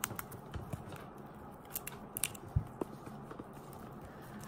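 Steamed crab claw shell cracking as it is squeezed between the fingers: a scattering of faint, sharp clicks and crackles.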